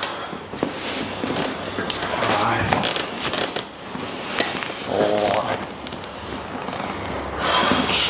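Crackling rustle of hands pressing and dragging over bare skin and clothing during a deep tissue massage of the hip and upper leg, as the client shifts on the padded mat. Short vocal sounds from the client come about five seconds in and again near the end.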